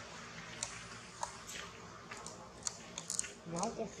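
Steady background hiss with scattered sharp clicks, then a voice starting near the end.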